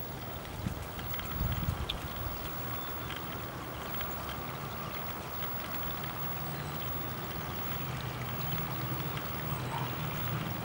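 Steady rushing noise like running water, under a low engine drone that grows stronger in the second half. A few faint short chirps now and then.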